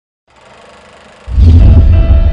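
Logo intro sound effect: a faint hiss, then, a little over a second in, a sudden loud deep bass hit that keeps rumbling, with a held musical tone coming in over it.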